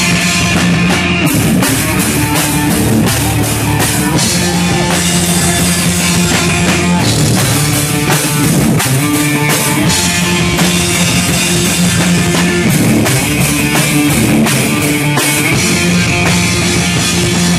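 Hardcore band playing live: distorted electric guitars, bass guitar and a drum kit in a loud, steady instrumental passage with no vocals, the drums keeping a regular beat.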